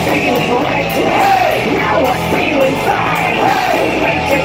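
Live rock band playing loud, with distorted electric guitar and a singer yelling over it.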